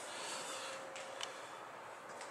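Faint room ambience: a steady background hush with a low hum, and two light clicks about a second in.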